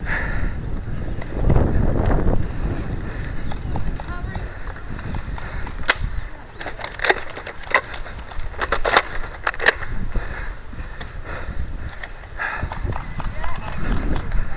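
Wind and movement rumble on a body-worn camera, with a handful of sharp clicks and snaps between about six and ten seconds in.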